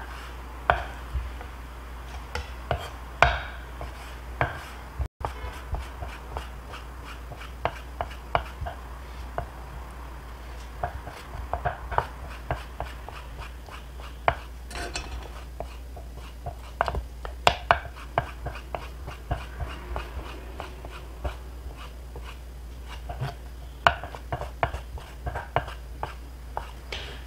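Kitchen knife slicing blanched cuttlefish into thin strips on a wooden cutting board: a long run of irregular light knife taps on the board, some sharper than others.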